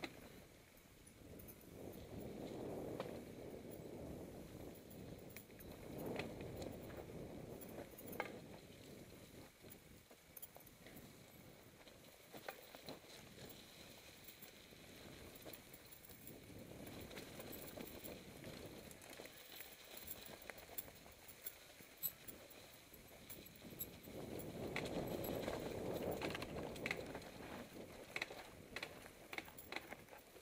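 Mountain bike rolling down a dry forest singletrack: knobby tyres crunching over dirt and dead leaves, with rattles and clicks from the bike over bumps. The rolling noise swells and fades, louder about two seconds in and again for a few seconds near the end.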